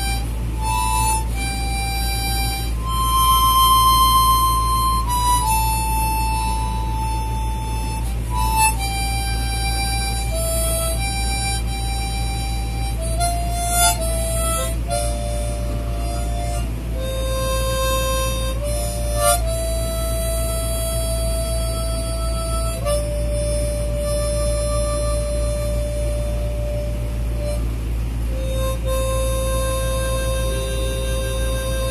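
A small see-through plastic blues harp (diatonic harmonica) played as a slow single-note melody, some notes held for several seconds, over a steady low hum.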